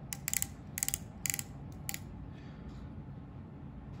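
A depth micrometer's ratchet thimble clicking as the spindle is turned down onto a gauge block to take a reading. There are a handful of sharp clicks in the first two seconds, then it goes quiet.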